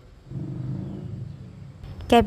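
A low rumble with a faint steady hum in it, coming in about a quarter of a second in and easing off near the end.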